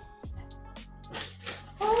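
Background music with a few short rustles of cardboard and tissue paper as a box's flaps are folded open and the tissue wrapping is lifted, the rustles bunched in the second half.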